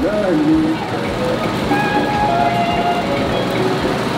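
Busy street-market noise: a steady mix of crowd voices and vehicle traffic, with one voice briefly at the start.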